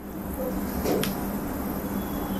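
Room tone through a lapel microphone in a pause between words: a steady low electrical hum and background hiss, with a faint click about a second in.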